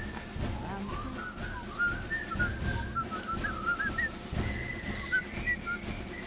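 Whistling: a thin, high, wavering whistled tune with quick little upturned notes, over a low rumble.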